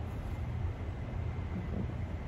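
Steady low hum of room noise with no distinct sounds over it.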